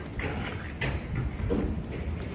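Footsteps on a brick-paved sidewalk, a few sharp clicks spaced irregularly, over a steady low rumble of outdoor street ambience.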